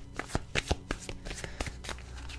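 A deck of tarot cards being shuffled by hand: a quick, irregular run of light card snaps and flicks.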